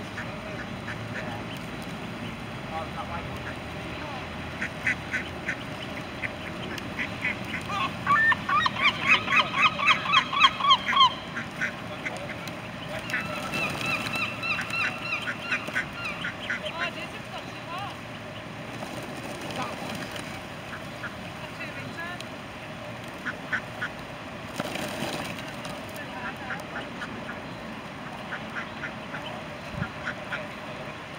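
Mallards calling, with a fast run of about a dozen loud, evenly repeated calls about a third of the way in, and scattered shorter calls through the rest.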